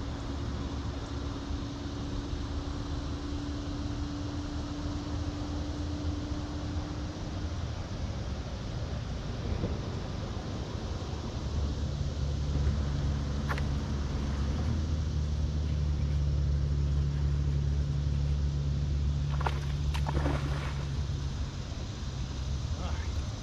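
Steady low motor drone from a boat, getting louder about halfway through, with a few faint clicks.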